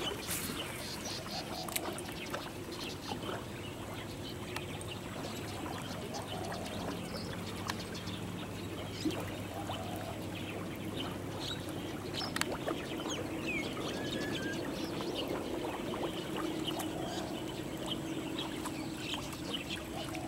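Quiet waterside ambience: small splashes and trickling water, under a steady low hum, with scattered small clicks and a few faint bird chirps.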